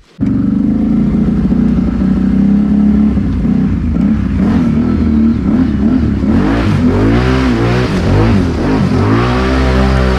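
ATV engine running steadily, then from about six seconds in revving up and down again and again as the quad is driven through a thick mud rut.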